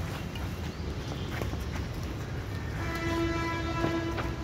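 A steady horn blast sounds for about a second near the end, over a low background rumble, with a couple of sharp racket strikes on a badminton shuttlecock during the rally.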